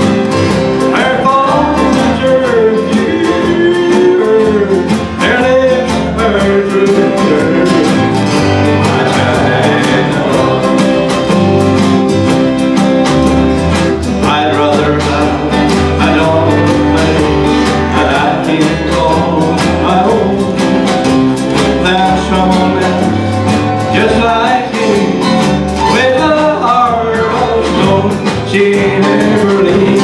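A live country song: a man singing over strummed acoustic guitar, mandolin, bass and drums, with a fiddle in the band, at a steady beat.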